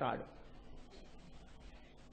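A man's voice trails off, then there is only a faint, steady hiss of background noise during a pause in his talk.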